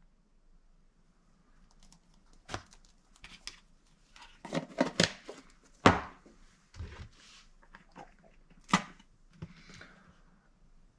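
Kitchen handling sounds: a metal spoon scraping and clinking against a cocoa tin and a plastic bowl, with a string of sharp knocks as containers are set down on the countertop. The loudest knock comes about six seconds in, another near the end.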